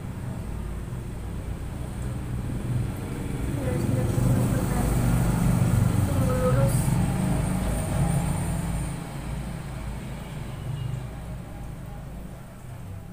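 Low rumble of a motor vehicle that swells about four seconds in and fades again near ten seconds, as if passing by.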